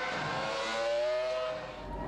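Formula One car engine running at high revs, its pitch climbing slightly, then dropping away in level near the end.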